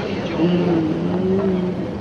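A voice holding one steady note, a hum or drawn-out vowel, from about half a second in for roughly a second and a half, over the hiss of an old film soundtrack.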